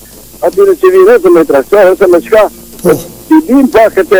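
A single voice singing in short phrases with held, wavering notes, with no instruments showing.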